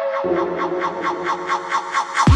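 Techno music in a breakdown with the kick drum dropped out: a fast, even synth pulse of about seven or eight notes a second over held synth tones, with a lower note coming in about a quarter second in.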